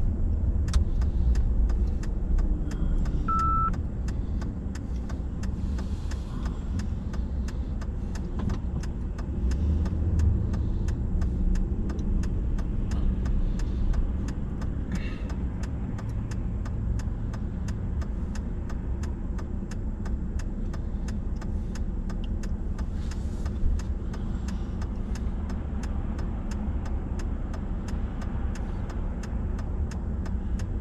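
Car driving, heard from inside the cabin: steady low engine and road rumble throughout. A single short beep comes about three seconds in.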